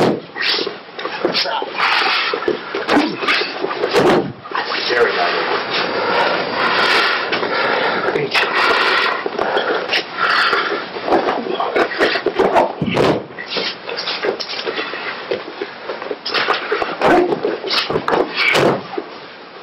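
A voice talking indistinctly throughout, with a few sudden sharp knocks.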